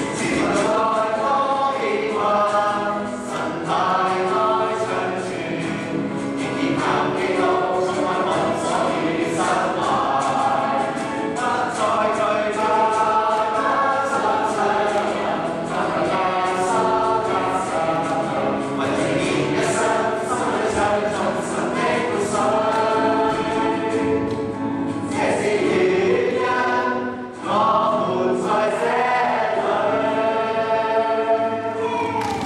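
A group of young men and women singing a Christian worship song together, with a brief break in the singing near the end.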